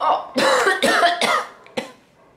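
A woman's voice making a short wordless vocal outburst lasting about a second and a half, followed by a brief click near the end.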